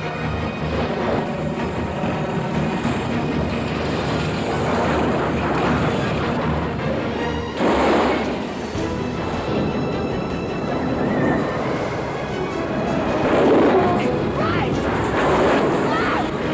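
Feature-film soundtrack of a tornado sequence: a musical score over dense rushing storm noise, with loud swells about halfway through and again near the end.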